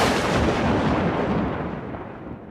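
A boom sound effect laid over the video: a deep rumbling blast that fades slowly.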